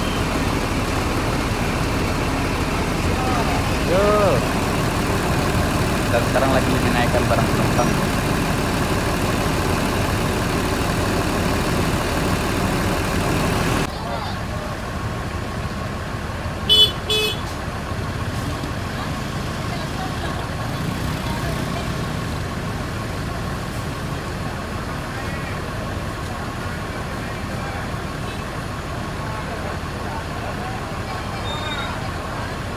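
Bus engine running beside a parked coach, with street traffic noise and background voices; after a cut it is quieter. About 17 s in, a vehicle horn beeps twice in quick succession.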